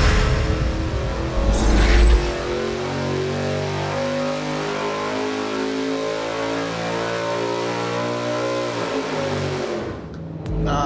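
A short stretch of theme music ends with a sharp hit about two seconds in. Then a built 5.3-litre LS V8 on an engine dyno revs in a full-throttle pull, its pitch rising steadily for about six seconds before it drops away near the end. This is the heads, cam and intake combination, which reaches 451.8 horsepower at 7,000 rpm.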